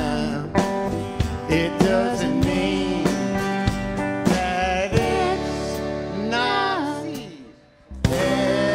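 Live band playing a country-style song, with acoustic and electric guitars and singing. Near the end a sung phrase slides in pitch, then the music drops away almost to silence for a moment before the band comes back in.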